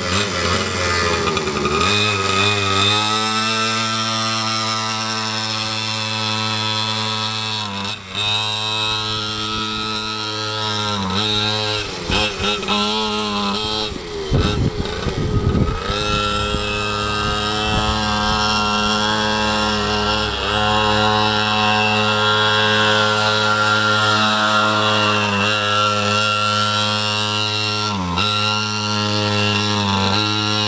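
Mini quad's small engine running as it is ridden, its pitch dipping and climbing again a few times as the throttle is eased off and opened, most deeply about halfway through.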